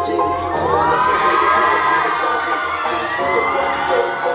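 Audience of fans screaming and cheering in high voices, rising about half a second in and holding, with a fresh rise near the end.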